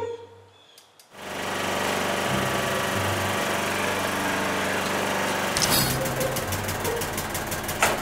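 Lawn mower engine starting up about a second in and then running steadily. From about halfway through, a rapid rattling clatter of about eight ticks a second joins the engine.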